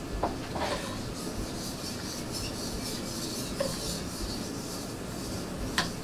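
Faint scraping of a chef's knife on a wooden cutting board, with a few light knocks, the sharpest near the end.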